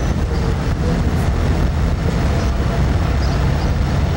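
Steady low rumble of motor vehicle engines and street traffic.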